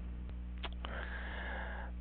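A soft intake of breath through the nose over the second half, over a steady low electrical hum on the recording, with a couple of faint clicks around the middle.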